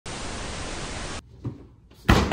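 Television static hiss, a steady, even rush of white noise lasting a little over a second, which cuts off suddenly.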